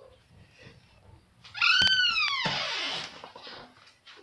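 A single high-pitched animal call about halfway in, rising briefly and then falling away over about a second, followed by a short breathy hiss.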